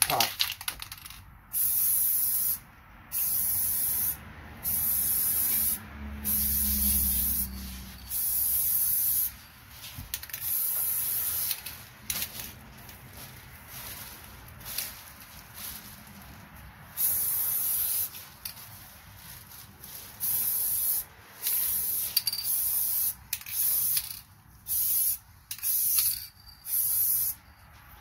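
Aerosol spray can of clear coat spraying in a series of hissing bursts about a second long each, with short pauses between them; the bursts stop for a few seconds midway, then come back shorter and quicker near the end. The sound of the third and final coat of clear going on in light passes.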